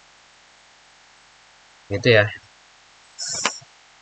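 A man's voice says a short phrase about halfway through, and a brief hiss follows near the end. Otherwise there is only a faint steady room hiss.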